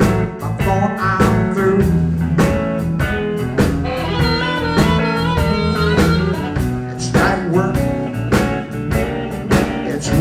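Live blues band playing an instrumental passage with electric guitar, bass and drums at a steady beat.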